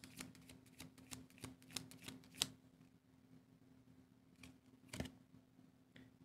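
Tarot cards being shuffled by hand: a quick run of faint flicking clicks for about the first two and a half seconds, then a few more clicks about a second before the end as the cards are handled.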